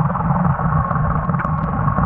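Steady underwater rumble and hiss picked up through an action camera's waterproof housing, muffled and dull, with a few faint ticks.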